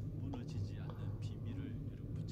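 Faint, distant speech over a steady low electrical hum.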